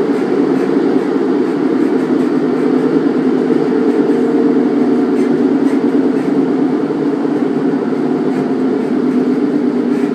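Cabin noise inside a Class 150 Sprinter diesel multiple unit under way: a steady drone from its underfloor Cummins diesel engine and running gear, with faint light ticks from the wheels on the track.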